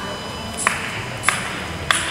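Three sharp, short clicks at an even beat about 0.6 s apart, over the steady background noise of a large hall.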